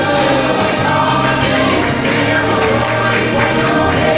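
Gospel song played loudly, a group of voices singing together over instrumental accompaniment.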